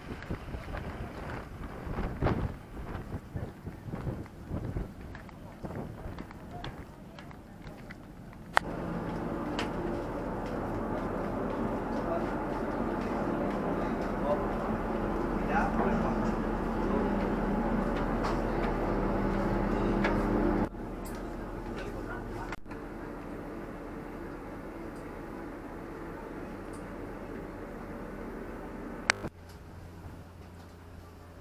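Footsteps and people talking on a wharf, then a ferry's engines droning steadily with a low hum, heard from the passenger deck. The drone drops suddenly to a quieter level about two-thirds of the way in, and again just before the end.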